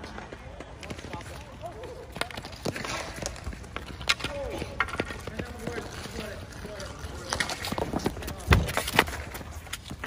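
Ball hockey on an asphalt court: scattered sharp clacks of hockey sticks and the ball, with players shouting and calling out. A loud thud comes about eight and a half seconds in.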